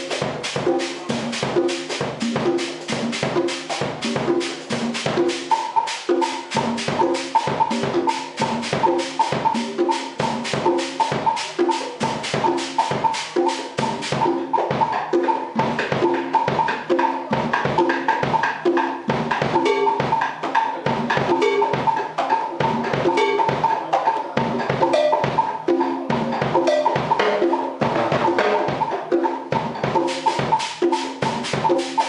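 One percussionist playing a Cuban groove, hand strokes on a pair of congas together with stick strokes on drum kit and timbale over a steady clave pulse. The fast high ticking drops out about halfway, and a repeated higher ringing note runs from about five seconds in.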